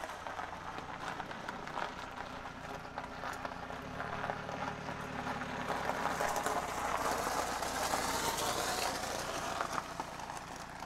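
A BMW 3 Series saloon driving slowly over a gravel driveway: its engine runs at low speed under the crunch of tyres on loose stones. The crunching grows louder from about six seconds in as the car turns and draws close.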